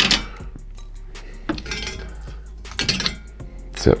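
Metal tongs clinking and scraping against an air fryer's basket and a ceramic plate as chicken wings are lifted out, in a few separate clinks.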